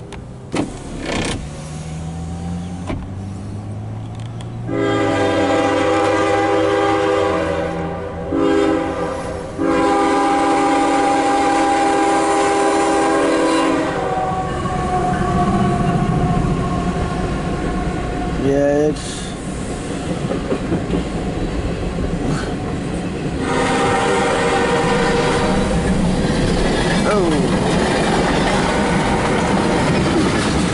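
CSX mixed freight train passing: its diesel locomotives approach with engines running, then the locomotive horn sounds a long blast, a short one and a long held one. After the horn the train's cars roll past with a steady rumble and wheel clatter, heard from inside a car beside the track.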